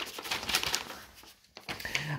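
Sheets of paper rustling as letters are handled close to the microphone, dying away about a second and a half in.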